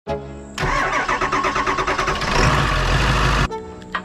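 Vehicle engine cranking on its starter and firing up, with music over it. The loud cranking and running begins about half a second in and cuts off suddenly shortly before the end.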